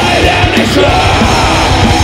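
Heavy metal band playing live: electric guitars, bass and drums under a harsh, yelled lead vocal.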